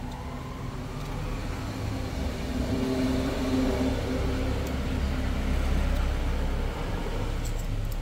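A motor vehicle's engine running, with a steady low rumble that grows louder through the middle and eases off near the end. A few faint clicks near the end.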